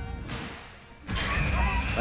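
Background music, with a sound fading out and then, about a second in, a sudden crash-like hit with a steady high tone held over it.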